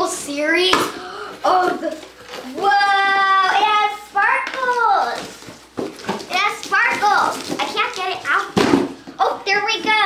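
A young girl's high-pitched voice, excited talking and drawn-out exclamations, with a few short knocks from the cardboard shipping box she is opening.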